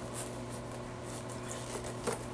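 Faint handling sounds, a few soft taps and light rustles, as packaging is picked up, over a steady low hum.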